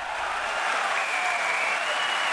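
Stadium crowd cheering and applauding a try at a rugby match, a steady roar, with a thin high held note rising over it from about halfway.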